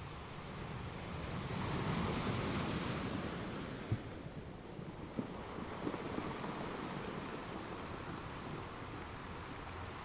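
A soft rushing wash of noise that swells about two seconds in and fades again, like surf washing in, followed by a few faint clicks.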